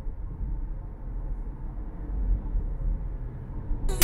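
Steady low road rumble of a moving car, engine and tyre noise heard from inside the cabin.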